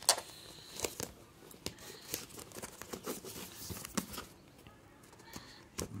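Fingernail scratching and picking at the seal sticker on a cardboard earbuds box to peel it off: a string of short, irregular scratches and clicks.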